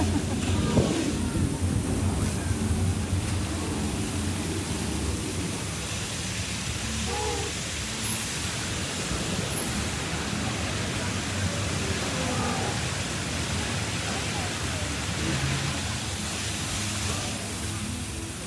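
Steady outdoor rushing noise with a low rumble, the kind wind makes on a phone microphone, with faint distant voices now and then.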